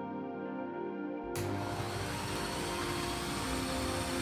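Corded electric drill switched on about a second in, then running steadily at speed, over background music.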